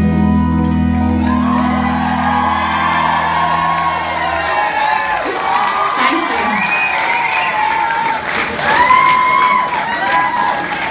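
A rock band's last held chord on electric guitar and bass ringing out and stopping about four and a half seconds in, under an audience cheering and whooping. A high, piercing whistle from the crowd cuts through in the middle.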